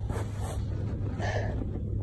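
Steady low rumble of wind buffeting the microphone, with faint higher sounds about half a second and a second and a quarter in.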